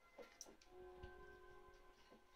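Near silence: faint background music with soft held notes, and a few light clicks in the first half.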